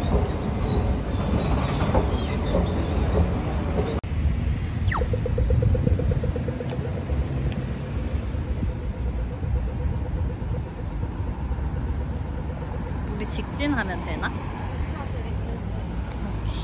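City street noise: passing traffic and a steady low rumble. About five seconds in, a pedestrian crossing signal ticks rapidly for a few seconds.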